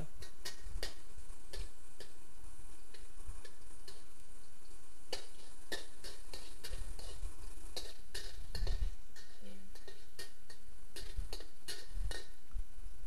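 Metal wok spatula tapping and scraping against a steel wok as minced garlic is stir-fried in oil: irregular light clicks, several a second, over a steady low hiss.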